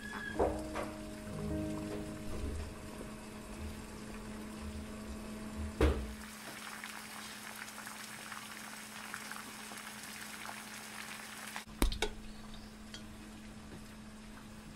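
Background music for the first half, then a pot of water at a rolling boil with dumplings cooking in it, bubbling and crackling. A few sharp knocks come about twelve seconds in.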